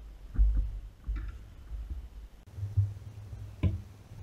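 Handling noise from hands working close to the microphone at a fly-tying vise: a few low bumps and rubs, and one sharp click near the end.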